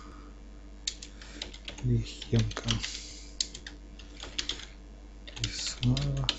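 Typing on a computer keyboard: irregular keystrokes in short runs as text is entered.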